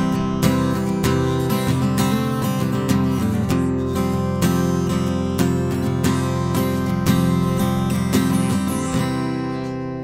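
Steel-string acoustic guitar strummed in a closing instrumental passage with no singing. The strumming stops near the end and the last chord rings away.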